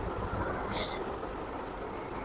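Faint hand-eating sounds: fingers working rice and pork on a banana leaf, with a single short click about a second in, over a steady low background rumble.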